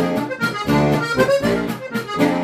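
Lanzinger diatonic button accordion (Steirische harmonika) playing a tune in short rhythmic pulses, with bass and chord notes under the melody.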